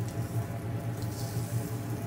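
Shrimp sizzling on a hot grill, over a steady low hum.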